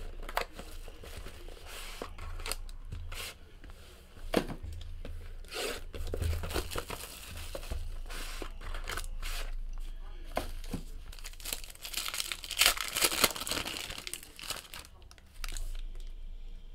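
Plastic wrapping crinkling and tearing as a sealed trading-card box and pack are opened by hand, with short rustles and taps of cardboard. A longer rip comes about three quarters of the way through.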